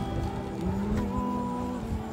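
Acoustic guitar playing with a man singing a long held note, over a low rumble.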